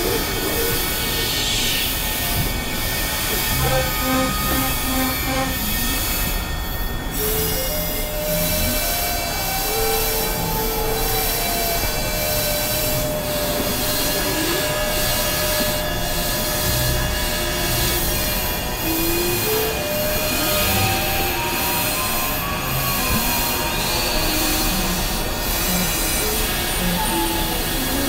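Experimental electronic noise music: a dense, steady wash of noise under many held tones, with short synthesizer notes stepping up and down over it.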